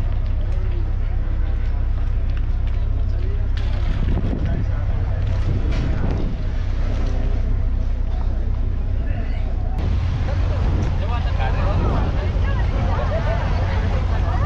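A passenger ferry's engine running with a steady low drone as the boat pulls away from the jetty, with people talking over it.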